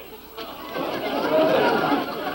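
A studio audience laughing, a mass of voices that builds from about half a second in and is loudest near the end.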